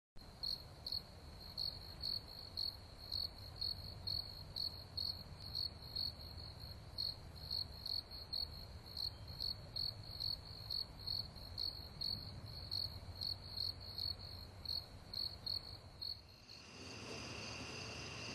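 Insect chirping, a cricket-like high pulse repeating steadily about twice a second, which stops about sixteen seconds in.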